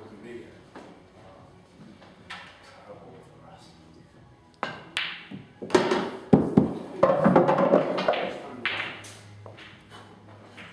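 Pool balls being played: a cue strikes the cue ball and balls clack together, with several sharp knocks around the middle that are the loudest sounds. Voices follow them.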